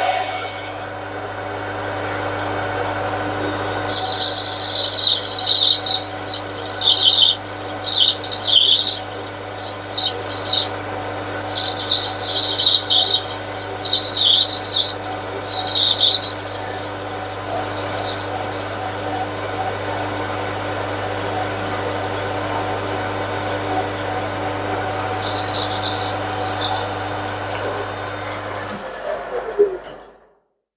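Metal lathe running steadily while the cutting tool turns down a brass bar, with intermittent high-pitched squealing over much of the cut. The lathe motor stops near the end.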